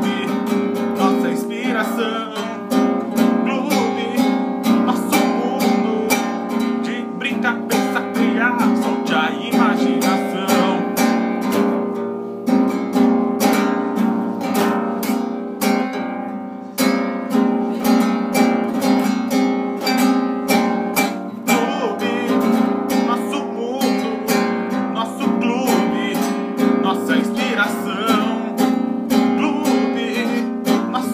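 Acoustic guitar strummed in a steady rhythm, with a man singing over it at times.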